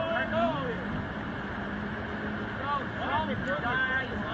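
Water rushing over a low weir, with people's voices rising and falling above it at the start and again near the end, and a steady low hum underneath.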